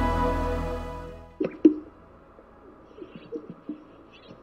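Background music fades out over the first second and a half. Then a male sage-grouse's strutting display: two sharp pops about a quarter second apart from its inflated air sacs, followed by quieter low gurgling notes.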